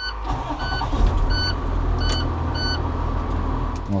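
School bus engine running steadily, heard from inside the cab, with a short electronic beep from the bus repeating about every two-thirds of a second.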